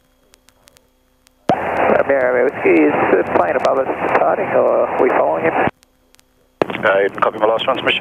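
Air-traffic radio voice transmissions through the aircraft's headset, thin and narrow-band, in two calls with a short gap between them starting about a second and a half in; before the first call only a faint steady hum and light clicks.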